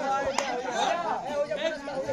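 Several men's voices chattering and calling out over one another, with a single sharp click about half a second in.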